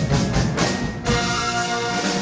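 French batterie-fanfare band playing live: a quick run of drum and percussion strikes in the first second, then held brass chords.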